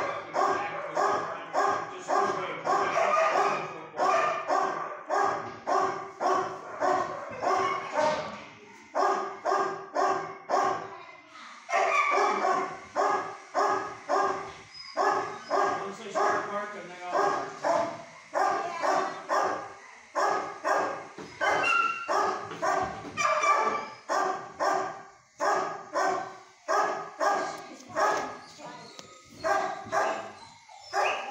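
Dogs barking in a shelter kennel block, a rapid, steady run of about three barks a second with a few brief pauses.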